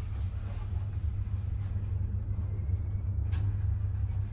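Steady low rumble of a Schindler elevator car travelling in its shaft, heard from inside the car, with a single click near the end.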